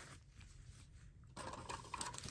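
Faint rustling and small clicks of plastic being handled: the film over a diamond painting canvas and small drill bags. It is mostly quiet at first and a little louder near the end.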